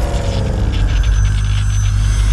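Cinematic logo-reveal sound effect: a heavy, steady bass rumble with a sweep falling in pitch over the first second and a thin high whine about a second in.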